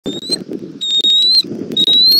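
Bald eagle chick giving high, thin whistled calls that rise slightly in pitch, three in two seconds, over a low rustle.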